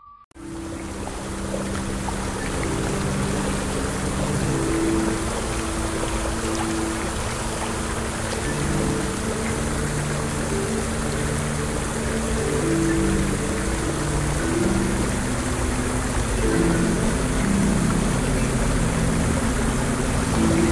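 Steady rush of flowing water, starting just after the beginning, under a slow, soft melody of low held instrumental notes.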